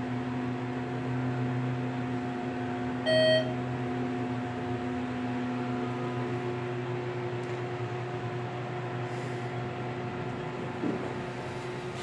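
Inside a hydraulic elevator cab: a steady electrical hum, with one short electronic beep from the elevator's signal fixtures about three seconds in. The beep is the loudest sound.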